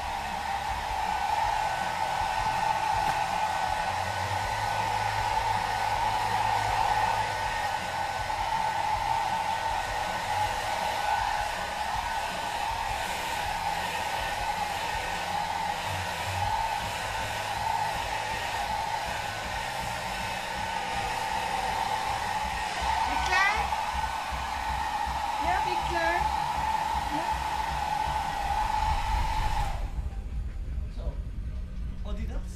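Hand-held electric hair dryer running steadily, blowing air at close range with a constant whirring hum; it cuts off right at the end. A few brief high squeaks rise over it about three-quarters of the way through.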